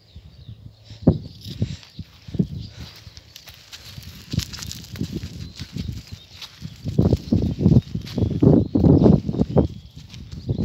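Irregular soft steps on the dirt ground of a sand paddock as a horse walks off. The steps grow louder and closer together in the last three seconds.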